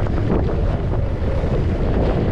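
Wind rushing over the microphone of a camera carried by a skier moving downhill, a loud, steady low rumble.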